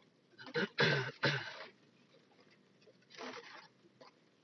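A man clearing his throat: a quick run of three harsh bursts about half a second in, then a single softer one about three seconds in.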